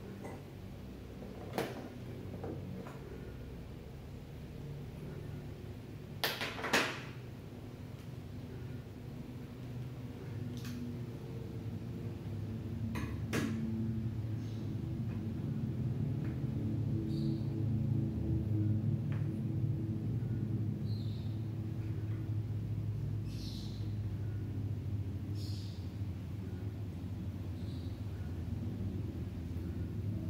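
Hands handling hookup wires and alligator clips: a few sharp clicks and taps, one about a second and a half in, a louder pair around six to seven seconds, another around thirteen seconds, with fainter ticks later, over a low steady hum.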